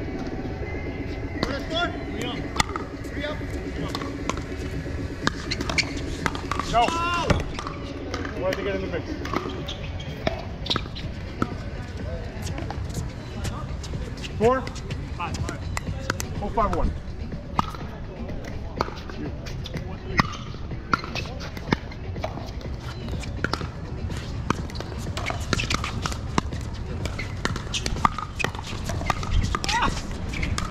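Pickleball rally: paddles striking the hard plastic ball in sharp, irregular pops, with voices in the background.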